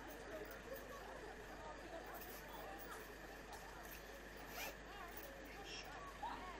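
Faint, indistinct chatter of distant voices from a crowd, with a couple of brief scratchy sounds about four and a half seconds in and near the end.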